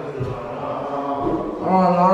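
A person's drawn-out, sing-song groan of dismay, the voice held and wavering in pitch, swelling into a louder, drawn-out "no" near the end: a reaction to a cockroach on the floor.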